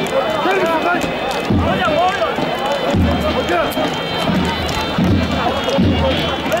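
Davul and zurna playing: a shrill, ornamented reed melody over heavy bass-drum strokes that fall about every one to one and a half seconds.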